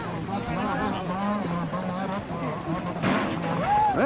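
Indistinct voices of onlookers talking, over a steady low hum. A short, sharp burst of noise comes about three seconds in.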